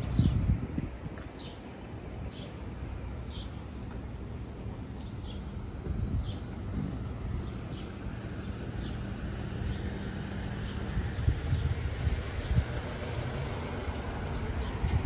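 Street ambience: a low steady car-engine hum and rumble that fades out about eleven seconds in, with a bird giving short high falling chirps about once a second throughout.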